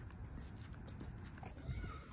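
Faint footsteps of people and a dog walking on a paved path: light, irregular taps.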